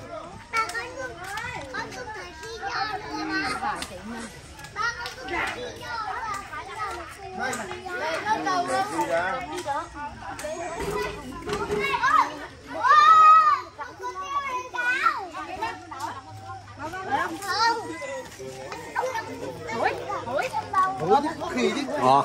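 Several young children chattering and calling out together, with adults talking, and one louder, high-pitched cry a little past halfway.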